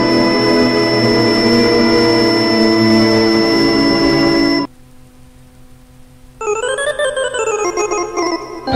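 Electronic keyboard with an organ sound playing a Serbian kolo dance tune. A full chord is held for about four and a half seconds and then cuts off suddenly, leaving one low held note. About six seconds in, a fast run of notes climbs and falls.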